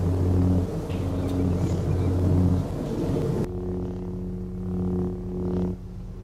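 Lightsaber sound effect: a steady low electric hum, changing to a slightly different, higher hum about three and a half seconds in.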